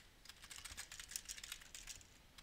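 Computer keyboard being typed on: a quick run of faint key clicks.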